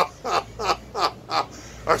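A person's voice in short, evenly spaced vocal bursts, about three a second, which stop about a second and a half in, just before speech resumes.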